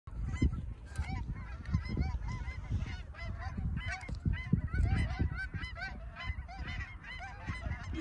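Canada geese honking, many short arched calls overlapping throughout. Low rumbling buffets on the microphone come and go underneath, the loudest about half a second in and again around four and a half seconds.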